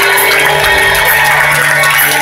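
Live rock band music through a loud concert PA, recorded from the audience, with steady held notes.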